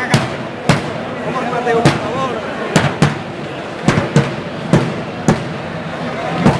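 Sharp knocks, about ten irregularly spaced over six seconds, over a steady murmur of crowd voices.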